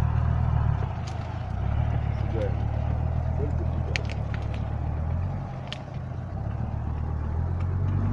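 A 4x4 SUV's engine running under load as the vehicle works its way out of boggy ground, with a steady low drone whose loudness eases about a second in and dips again around five to six seconds.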